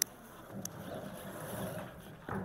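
Table microphone being handled and moved: a sharp click, a second click, then rustling and bumping against the mic.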